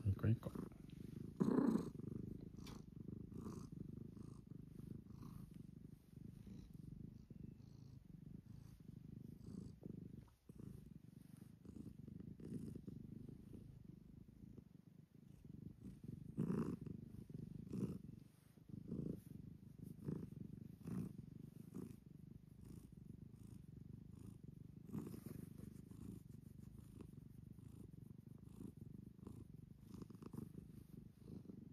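Domestic cat purring steadily and quietly while it is stroked, with a few brief louder sounds about two seconds in and in the middle.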